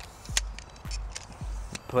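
A handful of short clicks and knocks from a tripod leg used as a monopod being handled, with its plastic leg clamp being worked by hand.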